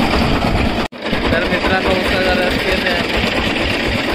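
An engine running steadily under crowd chatter, cut off briefly for a moment about a second in.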